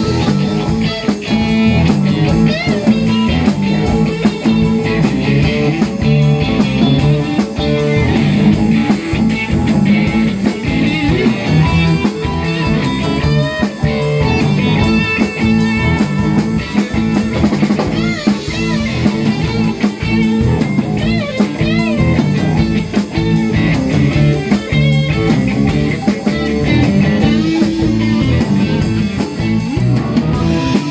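Blues-rock band playing live: electric guitar, bass and drums, with a lead line of bent, wavering notes over the steady groove.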